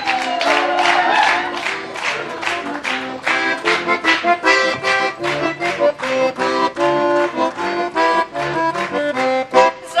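Accordion playing a lively folk tune, chords over a bass line in a quick even rhythm, as the instrumental introduction to a Ukrainian shchedrivka carol.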